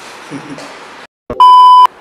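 A single loud, steady electronic beep about half a second long near the end, cut in sharply after a moment of dead silence.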